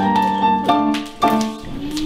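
Piano playing a lively dance tune in chords, with a new chord struck every half second or so; the music stops about one and a half seconds in.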